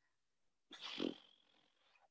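Near silence over video-call audio, broken about a second in by one short, faint breathy sound from a person, lasting about half a second.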